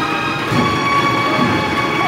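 Cornet-and-drum processional band holding a long, steady chord on the cornets over the drums, the close of a march.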